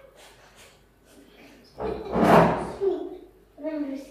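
A single loud thump about two seconds in, followed near the end by a child's voice.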